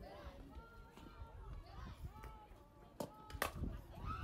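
Sharp crack of a softball bat hitting the ball about three seconds in, with a second sharp click a moment later, over faint background voices.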